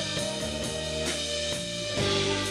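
Live indie-pop band playing an instrumental passage with no singing: guitar and bass notes held over a drum kit beat.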